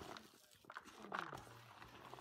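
Dry puffed-rice mix rustling and crackling as a hand tosses it in a plastic bowl. About a second in, a low drawn-out cry falls in pitch and is the loudest sound.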